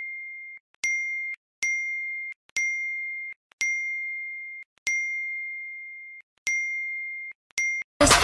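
A bright single-pitched ding sound effect, struck again and again, about eight times at uneven intervals. Each ding rings down and then cuts off abruptly, with dead silence between them.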